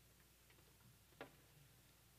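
Near silence: room tone with a low steady hum and one faint, sharp click just over a second in.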